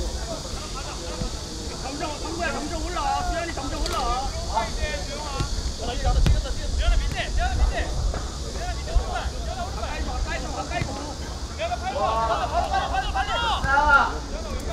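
Players shouting and calling to each other across a football pitch, several voices overlapping, with a louder burst of calls near the end. A low rumble of wind on the microphone runs underneath.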